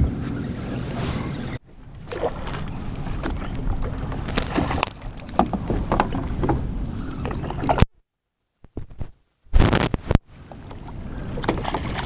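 Wind rumbling on the microphone and lake water slapping against a bass boat's hull, with a hooked bass splashing at the surface as it is brought to the net. The sound breaks off abruptly a few times and drops to near silence for about two seconds past the middle.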